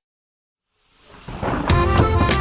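Silence for most of the first second, then a thunder-and-rain sound effect swelling up. Near the end a music intro with a steady beat comes in.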